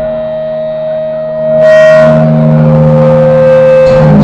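Amplified electric guitars holding sustained, ringing notes without drums, swelling louder about one and a half seconds in as a chord is struck, with one held note stepping slightly lower midway.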